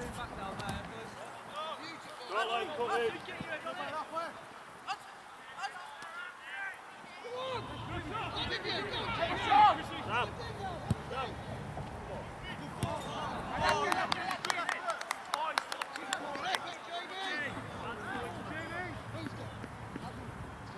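Indistinct shouts and calls from footballers across an open grass pitch, in short scattered bursts. A run of sharp clicks comes about two-thirds of the way in.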